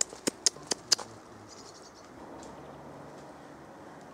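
Five sharp clicks in quick succession within the first second, from a handheld digital camera's shutter, followed by a faint steady outdoor background.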